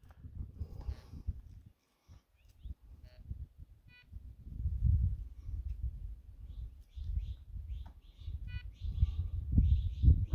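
A low rumble on the microphone that comes and goes, with a few faint, short bird chirps, two of them at about four seconds and eight and a half seconds.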